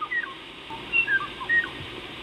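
Kauaʻi ʻōʻō singing: a string of short, clear whistled notes, some sliding up and some sliding down, over the steady hiss of the recording.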